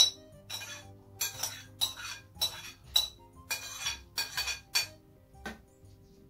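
A metal spoon clinking against a ceramic bowl as grated cucumber is scraped out of it, about two sharp clinks a second with the loudest at the start. Soft background music underneath.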